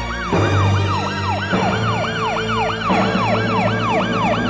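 Rapid yelping siren, its pitch rising and falling about four times a second, over music with low sustained chords.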